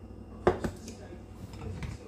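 Kitchen things handled on a countertop beside a glass mixing bowl: one sharp knock about half a second in, then a few light clicks and handling noise as the electric hand mixer is picked up.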